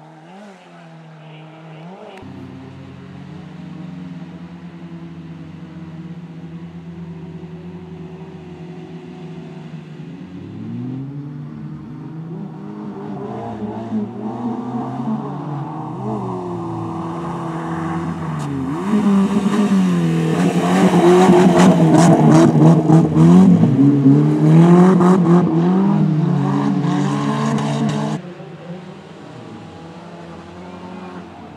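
Suzuki Swift racing car's engine revving hard on a dirt track, its pitch climbing and falling again and again as the driver accelerates and lifts. It grows louder as the car comes closer and is loudest about two-thirds of the way through. Near the end it drops suddenly to a quieter, more distant engine.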